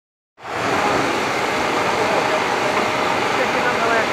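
Steam locomotive venting steam in a loud, steady hiss that starts about half a second in, with people's voices faintly in the background.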